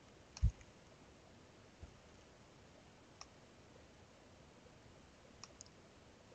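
A handful of sparse computer mouse clicks, spaced a second or more apart, over a quiet background, with a louder low thump about half a second in.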